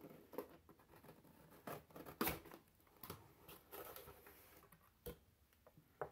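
Scissors cutting the tape on a cardboard mailer box and the lid being lifted open: faint scattered snips, scrapes and rustles, with sharper clicks about two seconds in and again about five seconds in.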